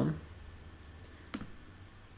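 A single sharp click about a second and a half in, from the MacBook Pro's trackpad being pressed to open a menu, with a fainter tick shortly before it.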